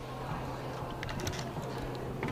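Quiet room tone in the darts hall: a steady low hum with a few faint, light clicks about a second in.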